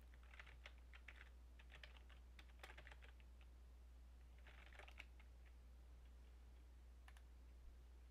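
Faint typing on a computer keyboard: runs of quick keystrokes through the first three seconds and again around four and a half to five seconds, then a single click near the end, over a low steady hum.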